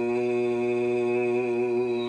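A man's voice reciting the Quran, holding one long, steady note on the drawn-out last syllable of a verse.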